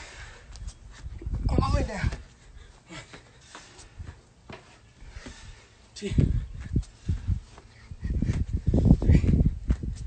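A man breathing hard and grunting in rough bursts through a set of burpees. The bursts come thick and fast in the last few seconds.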